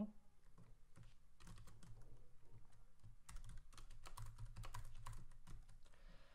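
Computer keyboard typing: quiet, irregular key clicks, a short flurry about a second and a half in and a longer run from about three to five and a half seconds in.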